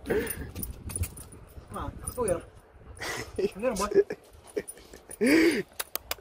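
Siberian husky whining and 'talking': a run of short howl-like cries, each rising and then falling in pitch, starting about two seconds in. The loudest comes just before the end.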